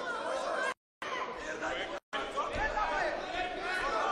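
Several voices talking and calling out over one another in a large hall. The sound cuts out to silence twice, briefly, about a second in and again about two seconds in.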